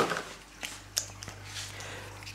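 Light handling noises as a Tunze flow pump is taken out of its packaging: faint rustling with a few small clicks, over a steady low hum.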